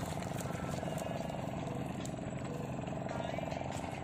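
A steady engine drone with a fine, even pulse.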